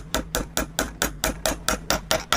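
A hammer tapping a glued wooden dowel into a drilled hole through a mitered wooden joint, in quick, even, sharp knocks about five a second.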